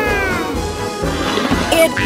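A single cat-like meow that rises briefly and then falls in pitch, over background music.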